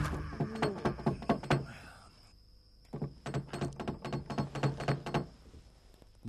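Rapid knocking on a wooden door in two bouts with a short pause between, the second bout about five knocks a second.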